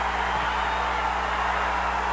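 Basketball arena crowd noise at the end of the game: a steady din of many voices with no single sound standing out.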